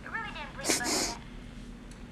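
A man crying: a few broken, voiced sobs, then two sharp, gasping breaths about a second in.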